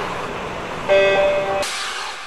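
Electronic logo-ident sound effects: a noisy whoosh, then about a second in a held synthesised tone that lasts under a second and cuts off into another sudden whoosh, which then fades.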